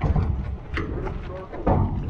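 A scuffle heard muffled: a steady low rumble under faint voices, with a knock or thud about three-quarters of the way through.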